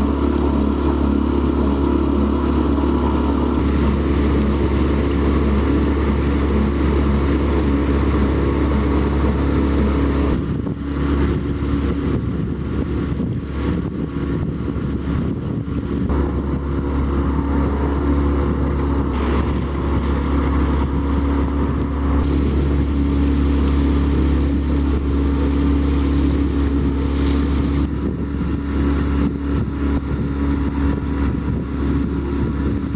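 A sailboat's engine running steadily with the boat under way. It holds a constant, even pitch, with a slight dip in level about ten seconds in.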